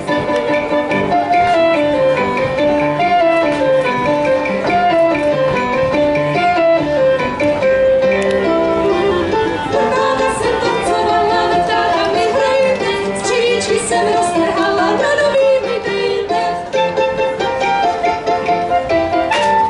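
Live Czech folk dance music played by a small string band, with voices singing the tune partway through.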